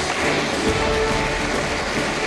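A large audience applauding steadily, with background music underneath.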